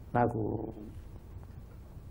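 A man's voice makes one short sound, a syllable or hum, a fraction of a second in, then a pause with only a faint low hum in the background.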